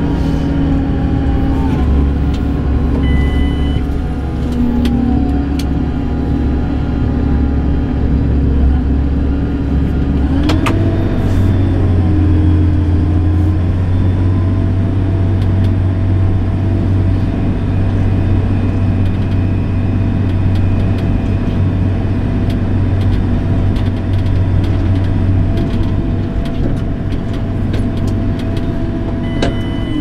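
JCB Fastrac tractor's diesel engine running steadily under way, heard from inside the cab. About ten seconds in there is a click and the engine note steps up to a higher pitch, where it holds.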